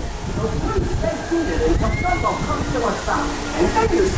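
Voices and chatter over a steady low rumble from the spinning Dumbo the Flying Elephant aerial carousel ride in motion.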